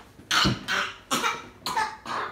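A child coughing about four times in quick succession.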